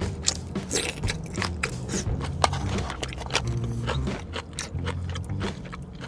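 Close-miked eating sounds: Korean spicy rice cakes (tteokbokki) being bitten and chewed, with many quick wet mouth clicks. Around the middle, chopsticks scrape and pick in the plastic takeaway tray.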